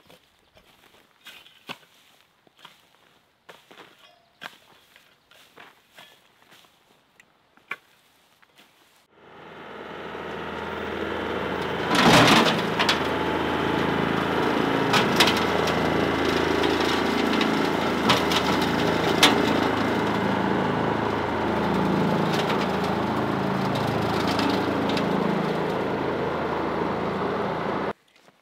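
Faint scattered scrapes and clicks of a rake working loose soil, then about nine seconds in a Yanmar compact tractor with a Rhino rotary cutter (brush hog) comes in loud and runs steadily, the cutter chewing through dirt and debris with a few sharp cracks along the way.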